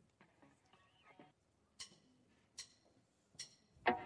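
Faint count-in before a song: three sharp, evenly spaced clicks about a second apart, starting about halfway through, then a short pitched note near the end.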